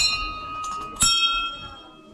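Small brass temple bells hanging from the ceiling, rung by hand twice about a second apart. Each rings on with a clear tone that slowly fades, and the second bell is a little higher-pitched than the first.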